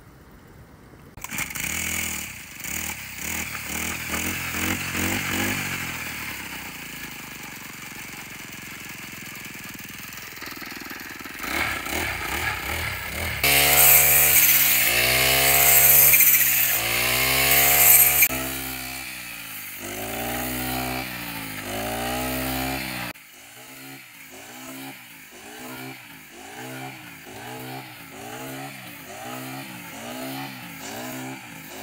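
Petrol brush cutter engine running and revving up and down over and over as it cuts standing wheat. It is loudest and hissiest for a few seconds near the middle, then settles into a regular rise and fall about once a second.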